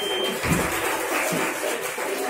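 Noise of an indoor fencing hall: indistinct distant voices and the fencers' footsteps on the metal piste. A thin, steady high beep, typical of an épée scoring box signalling a touch, stops just after the start.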